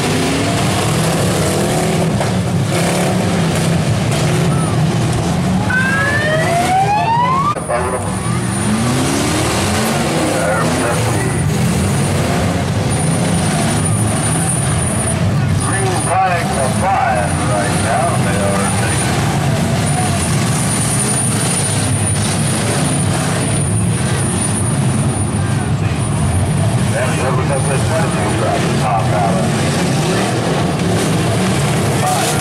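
Several demolition derby cars' engines running and revving together, with one engine revving up sharply about six to seven seconds in.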